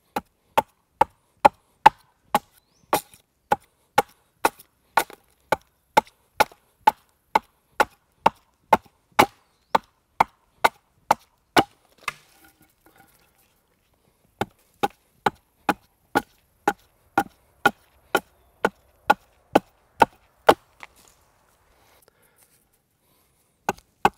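A short-handled axe chopping into the end of a wooden pole, steady strikes at about two a second. The chopping stops for about two seconds near the middle, then picks up again at the same pace.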